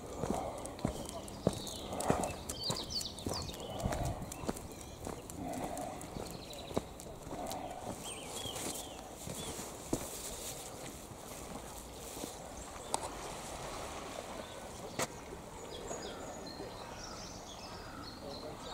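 Footsteps walking on a paved path, roughly two steps a second, fading in the second half, with small birds chirping now and then.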